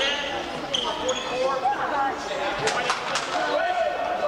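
People talking in a gymnasium, with a basketball bouncing sharply on the hardwood floor three times in quick succession a little past halfway through.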